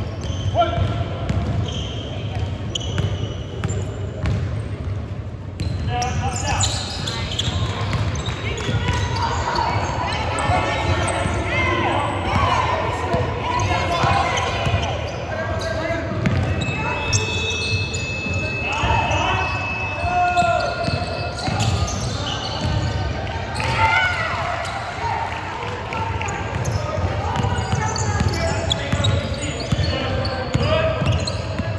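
A basketball bouncing on a hardwood gym floor during play, with players' and spectators' voices echoing through a large hall.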